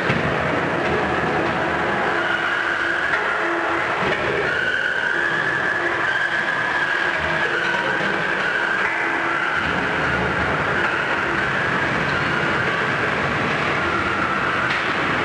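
Combat robots running in the arena: a steady high whine that drifts slowly up and down, over continuous rumbling noise, from Twister's spinning cylindrical shell weapon and the robots' drive motors.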